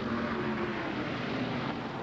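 A pack of USAC Silver Crown race cars running at full speed on the oval, a steady engine drone from several cars together.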